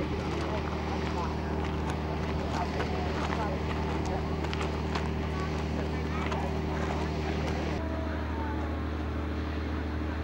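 A steady low mechanical hum with people's voices chattering in the background; the sound changes abruptly about eight seconds in.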